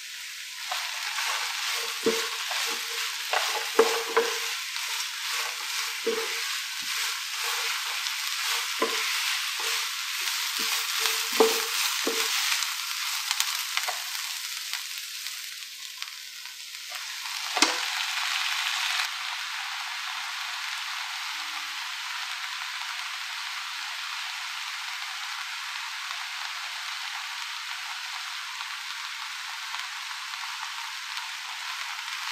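Vegetable hakka noodle stir-fry sizzling in hot oil in a pan. Over the first dozen seconds a spatula scrapes and clinks against the pan many times. After one sharp knock past the middle, the sizzle goes on steadily with no stirring.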